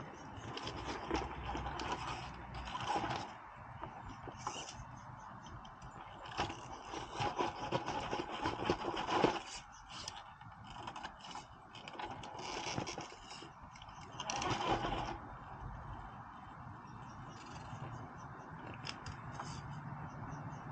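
Scale RC rock crawler's electric motor and geared drivetrain whirring in several short bursts as it inches up boulders, with its tyres scraping on the rock.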